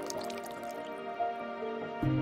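Calm ambient music with long, overlapping held notes, over water dripping and trickling that fades out about a second in.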